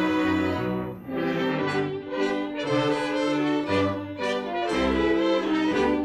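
Orchestral music with the brass to the fore, playing a melody whose notes change about every half second.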